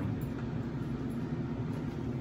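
A steady low hum of background noise, with no distinct knocks or clicks.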